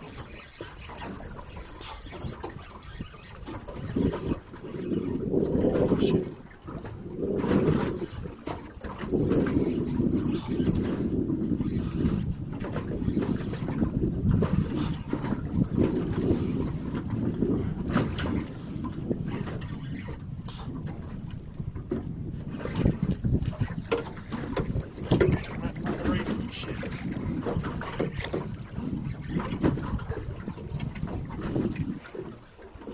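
Wind buffeting the microphone over water slapping against a small boat's hull, rising and falling in gusty surges, with scattered short knocks.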